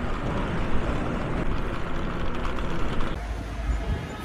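Wind buffeting the microphone and road noise while riding a scooter, a steady low rumble. About three seconds in it changes abruptly to a quieter street-traffic hum.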